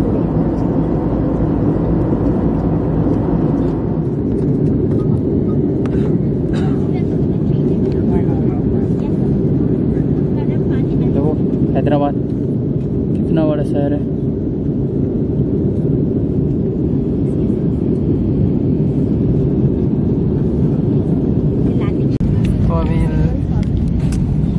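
Steady engine and airflow noise inside a jet airliner's passenger cabin in flight, a deep even rumble that eases slightly about four seconds in.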